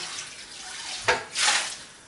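Kitchen tap running into a sink while a pan is rinsed and washed under it, with louder splashing about a second in.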